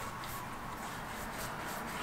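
Faint, soft rubbing of palms rolling a ball of bread dough into a log on a plastic-covered table, over a steady low hiss.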